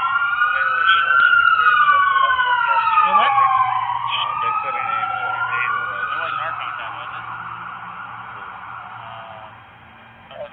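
Several emergency-vehicle sirens on a slow wail, overlapping as they rise and fall in pitch. They are loud at first, then fade away over the last few seconds as the vehicles move off.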